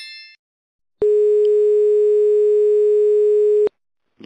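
A single loud, steady electronic beep tone, held for about two and a half seconds, switching on and off abruptly. Just before it, the ringing tail of a notification-bell chime fades out.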